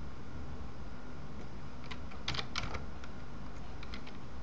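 A few light computer keyboard clicks, bunched together about two and a half seconds in, over a steady low hum.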